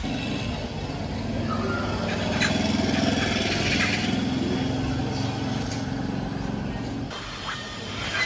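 Long-haired cat purring steadily while being stroked. The purr stops abruptly about seven seconds in, as the cat gets up.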